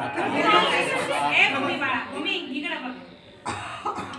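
Several people chattering over one another in a crowded room, with one short knock near the end.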